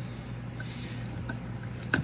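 A hand tap being worked back and forth in a hole in a tinned copper bar, giving a few faint clicks late on over a steady low hum.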